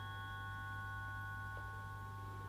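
Several steady, high, bell-like tones held together, ringing on without a break, over a low steady hum: a sustained drone in an experimental sound-art piece for prepared drums, guitar and live electronics.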